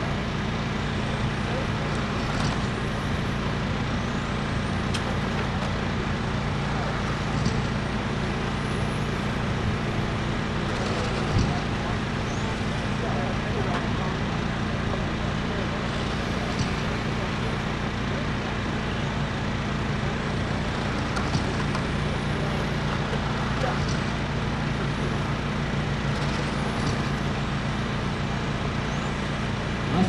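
Electric radio-controlled race cars with 17.5-turn brushless motors running laps, their motors giving faint rising whines every few seconds as they accelerate, over a steady low hum and background noise.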